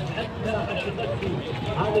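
Several people's voices talking at once outdoors, with an Arabic-speaking man's voice starting near the end.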